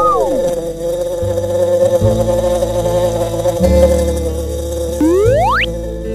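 Cartoon bee buzzing sound effect: a steady buzz, with a short rising-and-falling pitch glide at the start and a fast rising glide about five seconds in, over background music.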